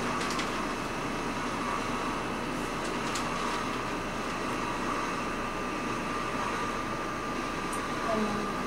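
Steady background hum of room noise with a thin, steady whine running through it, and a few faint clicks.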